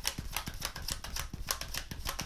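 A tarot deck being shuffled by hand: cards flicking and slapping against each other in a quick, irregular run of light clicks.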